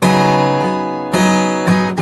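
Acoustic guitar strummed: a full chord struck hard at the start and left ringing, then quicker strokes about a second in and near the end.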